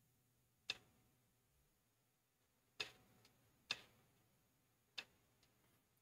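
About six short, sharp clicks spread unevenly over near silence, as stones are played on an online Go board.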